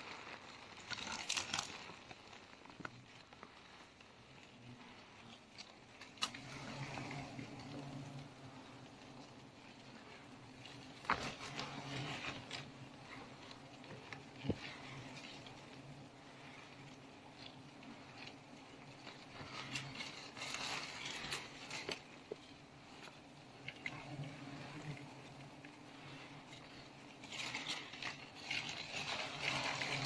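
Steady low hum of a giant honeybee (Apis dorsata) colony on its open comb, stirred up by smoke. Leaves and twigs rustle in several short bursts, with a few sharp clicks.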